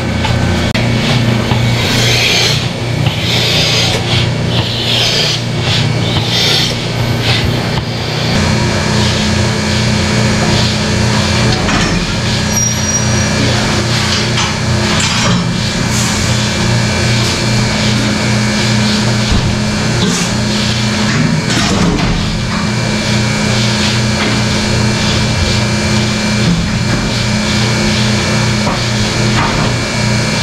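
Dairy milking-parlour machinery running: a steady mechanical hum from the milking vacuum system, with a few brief knocks from the stall equipment.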